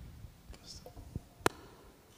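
Handling noise from a handheld microphone being passed from one person to another, with one sharp click about one and a half seconds in, over faint whispered murmuring.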